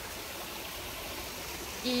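Steady, even hiss of outdoor background noise with no distinct events. A woman's voice begins just before the end.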